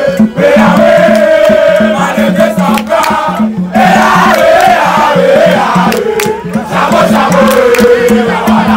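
A crowd of young people singing a gospel song together over a steady beat, with a short break in the singing about three and a half seconds in.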